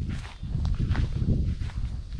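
Footsteps of a person walking across grass, over a steady low rumble.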